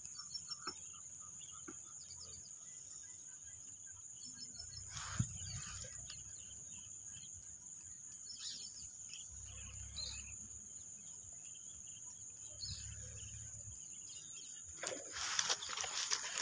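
Quiet pond-side evening ambience: a steady high insect drone with scattered faint animal calls. Near the end, louder rustling and handling noise as the fishing rod and camera are moved.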